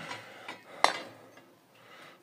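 A thin bent sheet-metal strip being fitted against a steel engine plate: light rubbing, then one sharp metallic clink with a short ring a little under a second in.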